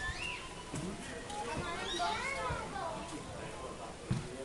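Children's voices, high-pitched calls and chatter, loudest around the middle, with a few low thumps.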